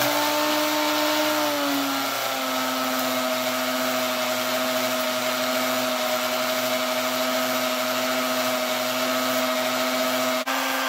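Lionel No. 97 coal elevator's motor running steadily and driving the conveyor that carries coal up to the hopper: a steady hum over a constant gritty mechanical noise, the hum dropping slightly in pitch about two seconds in.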